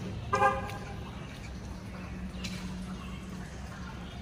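A single short car-horn toot, about a quarter of a second long, near the start, over a steady low hum.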